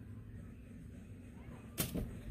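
Quiet room tone, then a single sharp knock or click near the end.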